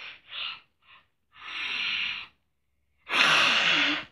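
A person's loud breathy exhales, hissed out with no words: three short puffs in the first second, then a longer breath, then the loudest and longest one near the end.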